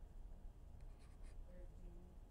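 Faint scratches and taps of a stylus writing on a tablet screen, over near-silent room tone.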